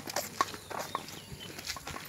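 Footsteps on a gravelly dirt track: a few short, sharp, irregular steps.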